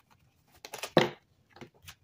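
Tarot cards being handled and pulled from the deck: a few short card snaps and clicks, the loudest a sharp snap about a second in.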